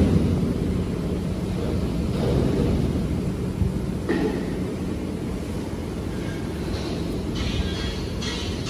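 Steady low hum of tissue-paper factory machinery, with a few soft thumps as large slit rolls of tissue are pushed along a slitting machine's shaft.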